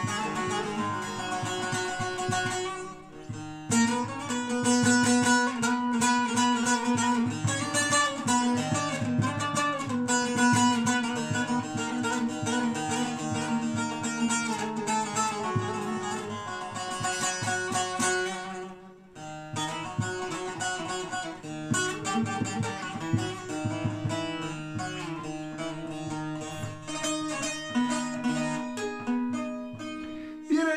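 Long-necked bağlama (saz) played solo, a rapidly picked instrumental passage of a Turkish folk tune, with two short breaks in the playing, about three seconds in and about nineteen seconds in.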